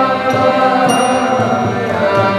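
Devotional kirtan music: a harmonium holding steady chords, with low hand-drum beats and a bright ringing metallic strike about a second in.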